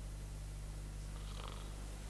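A short, low rasping, purr-like breath sound about one and a half seconds in, over a steady electrical hum.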